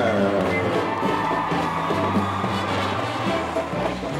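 High school marching band playing a swing-style passage: the chord slides down in pitch at the start, then settles into held chords over low sustained notes.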